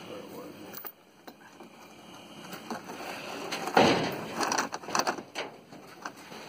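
Steel tow chain clanking and scraping against the metal deck of a flatbed truck as it is handled. It starts suddenly about four seconds in, with a few separate knocks after it.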